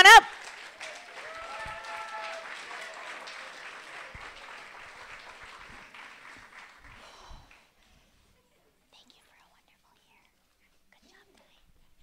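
Audience applause in a school hall, fading away over about seven seconds, with a voice calling out briefly about two seconds in; after that, near silence.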